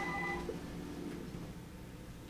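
Electronic telephone tone, several steady pitches sounding together; the highest stops just under half a second in and the rest about a second in, leaving faint room tone.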